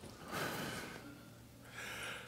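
A man's breathing picked up close by a headset microphone: two quiet breaths, one about half a second in and one near the end.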